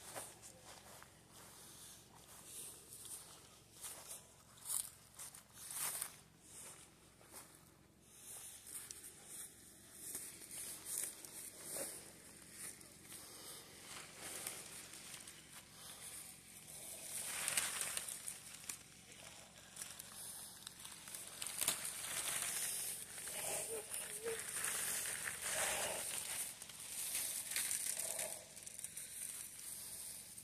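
Footsteps on dry, brittle grass, followed by rustling and crinkling as plastic and evergreen greenery are handled. The crinkling is loudest in the second half.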